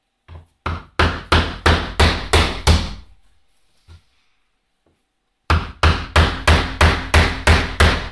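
A hammer striking in quick, even blows, about three a second: a run of about eight blows, a pause of a couple of seconds with a faint knock or two, then a second steady run starting about five and a half seconds in.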